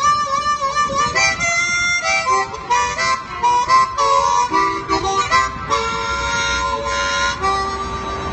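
Harmonica being played: a quick run of notes and chords that change every half second or so, ending on one long held note.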